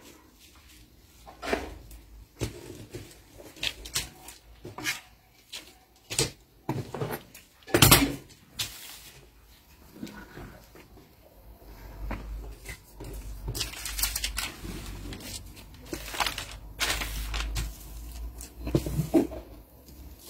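A large sheet of kraft pattern paper being handled on a table: scattered rustles and light knocks as a wooden ruler and scissors are laid on it, with one sharper knock about eight seconds in. A low rumble with rustling comes in later as the paper is smoothed by hand.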